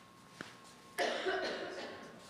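A single cough, a sudden harsh burst about a second in that trails off over about a second, after a faint click.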